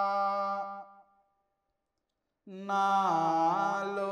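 A Buddhist monk's solo voice chanting a blessing in long, held melodic notes with slow pitch turns. The line fades out about a second in, a short silence follows, and the chant starts again about two and a half seconds in.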